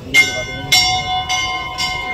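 A large hanging temple bell rung by hand, struck four times about half a second apart, its metallic tone ringing on between strokes.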